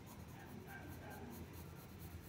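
Graphite pencil scratching on sketchbook paper, a faint quick series of short drawing strokes.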